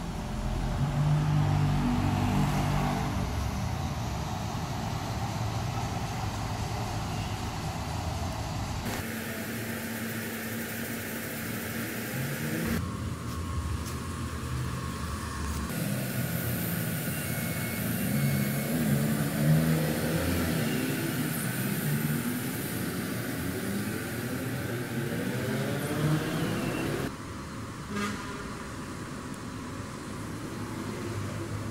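Outdoor urban background with motor vehicles passing, engine pitch rising and falling. The background noise changes abruptly several times, where the footage is cut.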